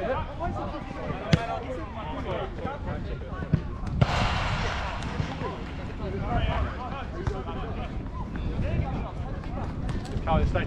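Players' shouts and calls across a five-a-side football pitch, with a few sharp thumps of the ball being kicked, the loudest at about one and a half, three and a half and four seconds in. A brief hiss follows the last thump.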